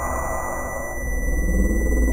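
Electronic tones from a synthesizer-like instrument: steady high-pitched whines over a low drone, with mid-pitched tones that change partway through.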